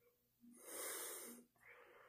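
A man's faint breath: one soft, airy intake lasting under a second, starting about half a second in, with a fainter breath just after.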